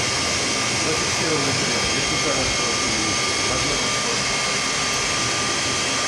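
Steady rushing jet-engine noise played inside a Tu-22M3 flight-simulator cockpit, even in level throughout, with a couple of faint steady whining tones in it.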